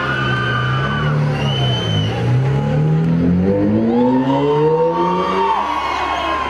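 Recorded sound effect of a car engine revving, played as part of a dance track: its pitch dips about two seconds in, then climbs steadily for several seconds before the music comes back in.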